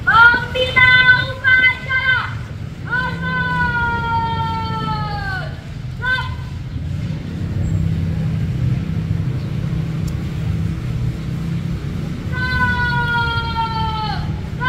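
A boy's high voice shouting parade-ground drill commands for a salute: a few short syllables, then a long drawn-out, slightly falling call with a short clipped word after it, and another long drawn-out call near the end. A steady low rumble runs underneath and stands out in the pause between the calls.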